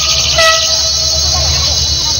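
Train horn sounding one steady note for about a second, over the low rumble of the running train.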